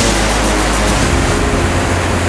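Background music mixed with the steady rush of a waterfall.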